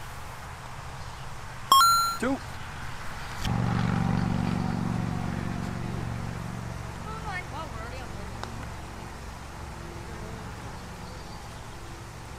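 A metal putter strikes a mini golf ball with a short, ringing ping about two seconds in. From about three and a half seconds a low, steady engine hum starts suddenly and slowly fades.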